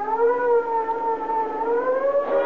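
Police siren sound effect on an old radio-drama recording: one sustained wail whose pitch sags slightly and then climbs again.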